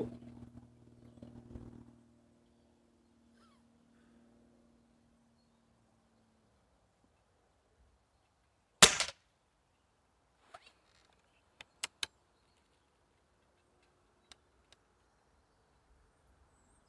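A single shot from an Air Arms S400 pre-charged pneumatic air rifle: one sharp crack about nine seconds in. A few quiet clicks follow as the sidelever is worked and the next pellet loaded.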